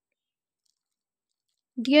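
Silence, then a woman begins speaking near the end.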